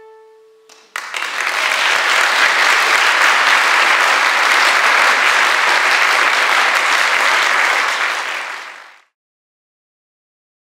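Four fiddles' last held note dying away, then an audience applauding loudly for about eight seconds before the sound cuts off abruptly.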